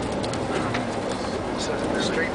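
Steady engine and road noise inside a moving bus, with faint voices in the cabin.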